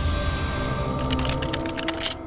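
Closing jingle of held music tones with a quick run of keyboard-typing clicks starting about a second in, a sound effect for a web address being typed into a search bar.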